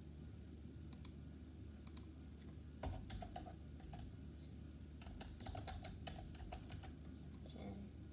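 Faint typing on a computer keyboard: a couple of single keystrokes, then two short runs of rapid keystrokes, over a low steady hum.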